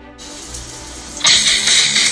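Toilet flushing: a loud rush of water that starts about a second in.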